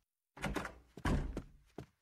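Two thuds in a cartoon soundtrack, the first about half a second in and the second, louder and deeper, about a second in, each dying away; a short click follows near the end.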